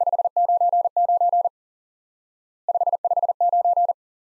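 Morse code sent as a single steady keyed tone at 40 words per minute. Two groups about a second apart repeat the signal reports 599 and 559.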